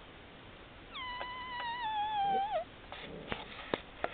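A four-week-old Maremma-Abruzzese sheepdog puppy whining: one long high whine of about a second and a half, sagging slightly in pitch and wavering at the end. A few short sharp clicks follow near the end.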